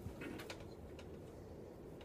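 Quiet room tone with a low steady hum and a few faint clicks in the first second.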